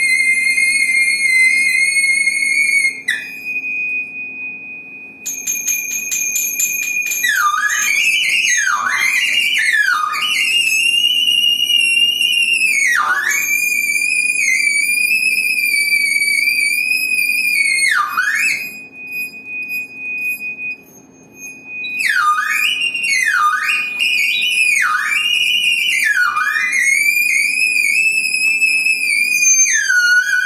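Free-improvised saxophone and percussion music: a piercing, sustained high squeal held almost throughout, swooping sharply down in pitch and back up many times. It thins out twice, a little after the start and again past the middle. A faint steady low drone sits underneath.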